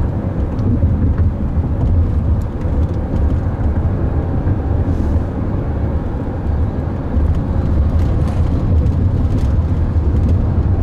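Steady low road rumble and tyre noise inside the cabin of a Chrysler Pacifica minivan driving at street speed.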